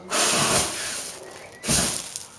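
Fire breathing: a mouthful of fuel blown out as a fine spray across a torch flame, heard as a loud hiss lasting about a second. A second, shorter and deeper blast comes near the end as a flame bursts up by the torch.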